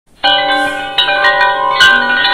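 A mobile phone ringing loudly with a bell-like chiming melody, starting about a quarter second in.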